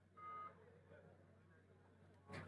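A single short beep, about a third of a second long, just after the start; otherwise near silence.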